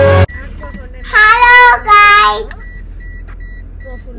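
Intro music cuts off; then a child's voice sings out two drawn-out, wavering notes over the low hum of a car cabin. A faint high beep repeats about three times a second near the end.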